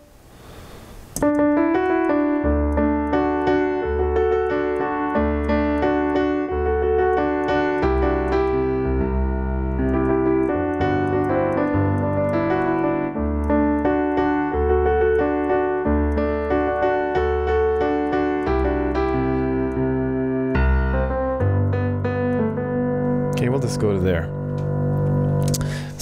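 Piano played with both hands, starting about a second in. The left hand repeats bass octaves on D, C and G in a steady beat, about one note a second, while the right hand plays chords and melody above.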